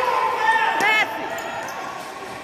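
Sneakers squeaking on the futsal court floor as players run and turn, in short chirps that rise and fall in pitch, thickest in the first second and stopping suddenly about a second in. The squeaks echo in a large gym hall.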